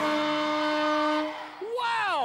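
Game-show time-up buzzer: one steady held tone lasting about a second and a half as the countdown reaches zero, marking the end of the round. Voices shout with wide swings in pitch near the end.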